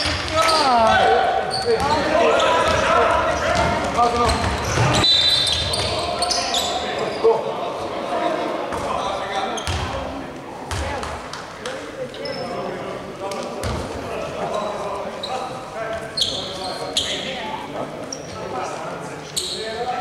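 Basketball game in a large gym: voices shouting, loudest in the first few seconds, over scattered thuds of the ball bouncing on the wooden court, all echoing through the hall.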